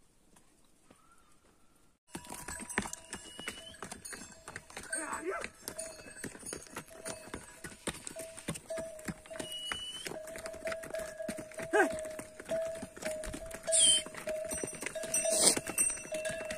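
About two seconds in, hooves of laden pack mules start clopping on a stony trail, with a bell on the animals ringing steadily and pulsing in time with their walk.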